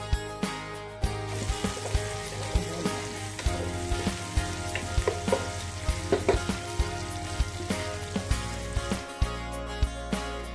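Chopped garlic and onion sizzling in hot oil in a wok, stirred with a wooden spoon that knocks and scrapes against the pan in frequent short clicks; the sizzle grows fuller about a second in.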